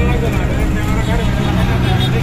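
A man talking over the steady hum of an auto-rickshaw's small engine running, heard from inside the passenger cabin.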